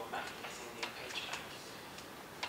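Speech: a woman giving a talk, her voice carrying in a room, with a few short sharp clicks among the words.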